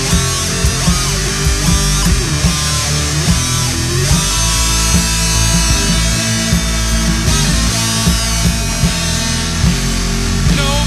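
Instrumental passage of a grunge/hard rock song: guitar over bass and a drum kit, with a steady beat.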